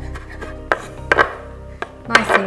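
Chef's knife chopping flat-leaf parsley on a wooden chopping board: several uneven knife strikes against the board, over soft background music.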